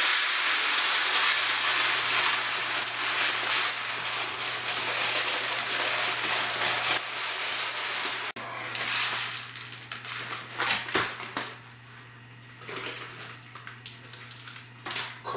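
Dry food poured from a plastic bag into a storage container: a steady rushing hiss of grains sliding out, which cuts off suddenly about eight seconds in. Quieter rustling and handling clicks follow.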